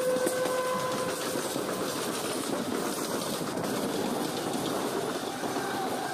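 Electric suburban local train (EMU) running on the rails: a horn blast, slightly falling in pitch, dies away about a second in, leaving the steady rumble and rail noise of the moving train.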